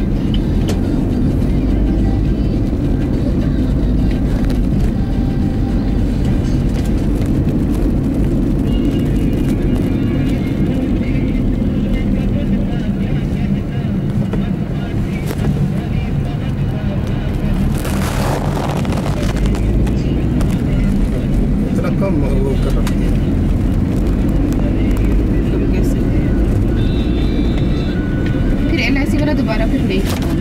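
Inside the cabin of a Maruti Swift being driven in city traffic: steady low engine and road rumble, with a short loud hissing burst about eighteen seconds in.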